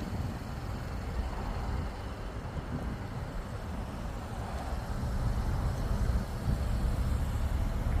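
Low, steady outdoor rumble with no distinct events, growing a little louder in the second half.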